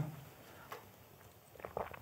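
A quiet room while a shot is drunk: one faint click about a third of the way in, then a few faint short mouth or sipping sounds near the end.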